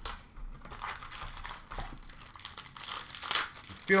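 Shiny plastic-foil wrapper of an Upper Deck Premier hockey card pack being torn open and crinkled by hand, a continuous irregular crackle that rises toward the end, after a short tap as the box is handled.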